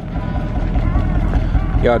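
A car engine idling with a low, steady rumble.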